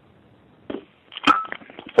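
Telephone line on hold: faint line hiss, then a few short clicks and a brief beep about a second in.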